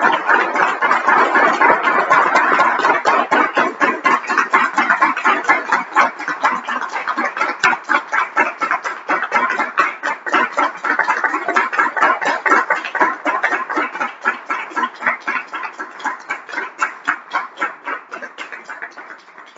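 Audience applauding, the claps growing sparser and quieter toward the end.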